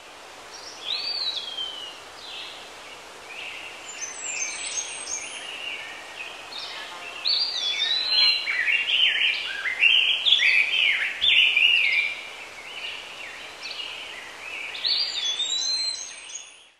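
Wild birds singing: a chorus of whistled and warbling phrases, some sweeping down in pitch, busiest and loudest in the middle.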